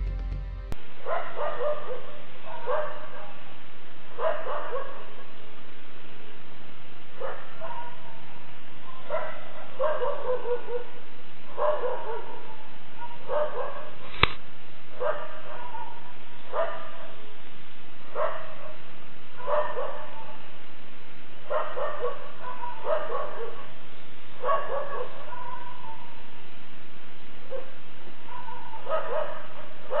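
A dog barking over and over, a bark or short run of barks every second or two, heard through a security camera's microphone that cuts off the high end. A single sharp click about halfway through.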